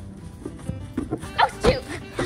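A small dog barking, a couple of short, sharp barks about a second and a half in, over background music.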